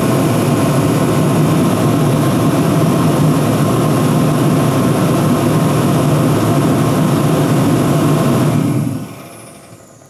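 Andrews diesel/kerosene forced-air space heater running, a loud steady fan-and-burner roar. About nine seconds in it shuts off and the noise dies away over about a second.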